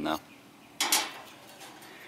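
A single short clatter about a second in, from the metal barrel and plastic barrel cutter being handled.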